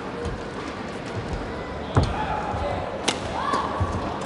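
Badminton rally: racket strings striking the shuttlecock, two sharp hits about a second apart near the middle. Court-shoe squeaks and a steady hall murmur run underneath.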